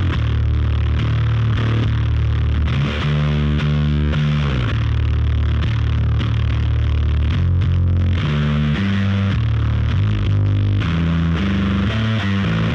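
Electric bass guitar, a Squier Classic Vibe Jazz bass fitted with a Baguley aluminium neck, played through a heavy fuzz pedal. It plays a slow riff of low, sustained, thickly distorted notes, with slides between notes and quicker note changes in the last few seconds.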